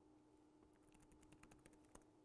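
Faint computer keyboard typing: a quick run of about a dozen key clicks starting about a second in, the last one a little harder, as a VPN password is entered. A faint steady hum runs underneath.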